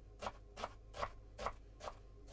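Chef's knife slicing an onion on an end-grain wooden cutting board: five soft, evenly spaced knife taps, about two and a half a second.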